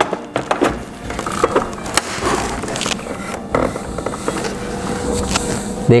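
Hard plastic toy parts knocking and clicking together as pieces of a dinosaur slide toy are fitted by hand. There are a few sharper knocks about two and three and a half seconds in.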